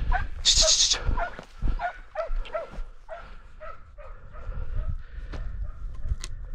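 Scent hound giving tongue in a run of short yelps, about two or three a second, as it works the line of a hare.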